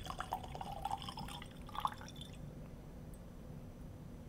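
Whisky trickling and dripping from a miniature bottle into a tasting glass, the last drops falling and stopping a little over two seconds in.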